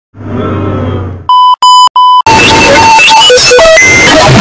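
A low electronic buzz for about a second, then three electronic beeps at the same pitch, the middle one longest. After the beeps, loud music with electric guitar starts abruptly and carries on.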